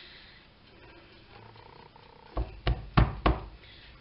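A kitchen knife stabbing into the bottom of an upturned plastic quark tub, four sharp punctures about a third of a second apart near the end. The tub is pierced so the quark will slide out of it.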